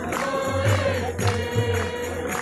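Gospel choir singing with a pulsing bass line and sharp jingling percussion.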